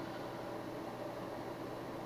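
Faint steady hiss of room tone and microphone noise, with no distinct sound events.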